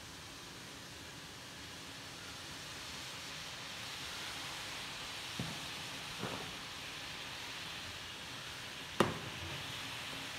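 Shallow liquid sizzling in a hot iron kadai, a steady hiss that grows louder as the pan heats. Two light knocks about midway and one sharp knock about a second before the end.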